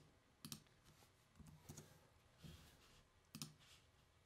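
Near silence broken by a handful of faint, scattered clicks from computer mouse and keyboard controls as a selection is made in recording software.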